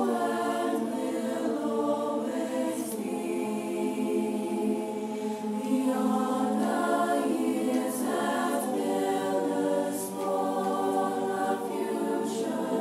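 A choir singing, holding long chords that move from note to note.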